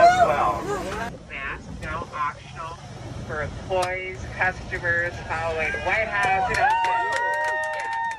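A voice making an announcement over an airliner's cabin PA, then, near the end, several passengers whooping and cheering together with some clapping.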